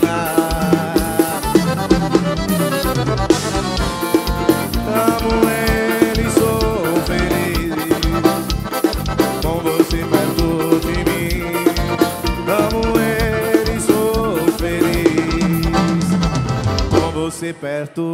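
Live forró band music: an accordion carries the melody over a drum kit and percussion at a brisk, steady beat. The band drops out briefly near the end, then comes back in.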